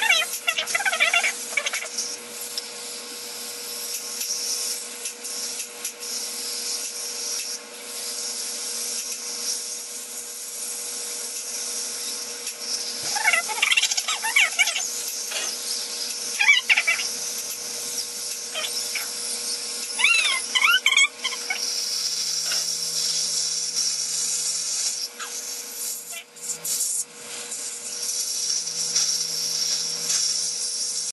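Slow-speed dental polishing handpiece with a prophy cup running steadily on the teeth: a constant high hiss with a steady whine underneath. A few short vocal sounds break in, near the start and again around the middle.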